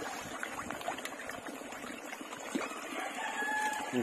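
Chickens clucking, with a rooster crowing once about three seconds in, over a scatter of light clicks.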